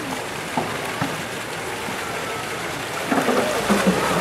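Water sloshing steadily as a polar bear swims in a pool, turning into louder splashing in the last second as the bear lunges at and seizes a floating plastic buoy toy.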